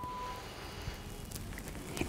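Faint rustling of a tracksuit jacket, with a few soft crackles, as the shoulders are slowly rolled back, over quiet room tone.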